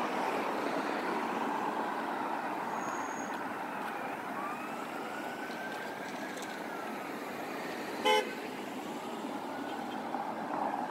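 Steady city street traffic, cars passing along a multi-lane road. About eight seconds in comes one short, sharp car horn toot, the loudest sound.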